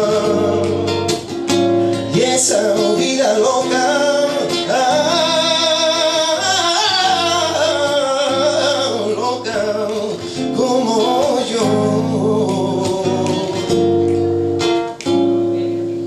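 Male voice singing long, wavering held notes over his own nylon-string Spanish guitar, live and unamplified-sounding, in flamenco style.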